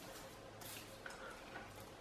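Faint, soft rustles of tarot cards being slid and rearranged on a wooden table, over quiet room tone.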